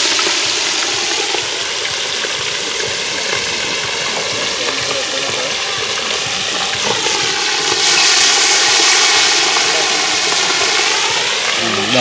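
Fish deep-frying in a large aluminium pot of hot oil over a wood fire, the oil sizzling loudly and steadily, swelling a little about eight seconds in as more fish goes in.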